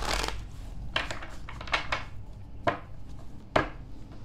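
A deck of oracle cards being shuffled by hand: a series of about five short papery riffles and flicks of the cards.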